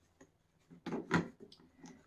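A few light clicks and knocks of plastic being handled, about a second in and again near the end, as a paper dust bag is slid into an Electrolux Olympia One canister vacuum and its front end cap is pushed into place.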